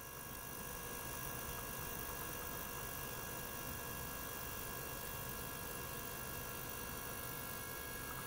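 Steady hum and hiss of a small water-circulation pump and ultrasonic tank running, with a few faint steady high tones.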